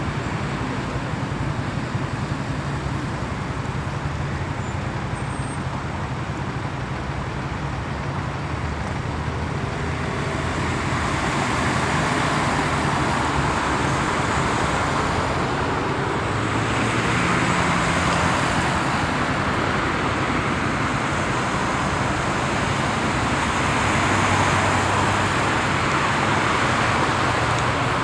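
Road traffic on a busy city street: a steady wash of cars driving past, with engine hum and tyre noise swelling as vehicles pass about ten, seventeen and twenty-four seconds in.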